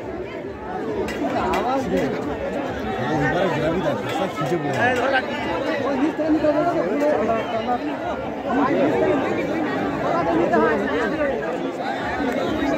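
Crowd chatter: many voices talking and calling out over one another at once.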